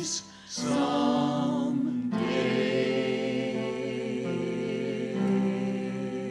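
A small group of voices singing a hymn with keyboard accompaniment. The singing breaks off briefly just after the start, then goes on in long held notes.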